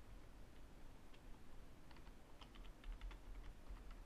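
Faint typing on a computer keyboard: a few scattered keystrokes, then a quick run of about eight keystrokes about two seconds in as a password is typed.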